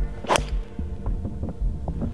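A single sharp crack of a golf club striking a teed ball on a tee shot, about a third of a second in, over background music with a steady thumping beat.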